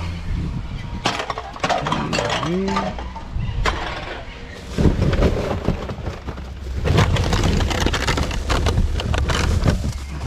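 Hands rummaging through rubbish in a wheelie bin: plastic bags rustling and crinkling while bottles and containers knock and clink against one another in quick, irregular strikes.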